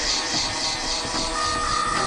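Opening of a dark psytrance track: an industrial, machine-like noise texture with a fast repeating hissing pulse, about four to five a second. A held synth tone comes in about a second and a half in.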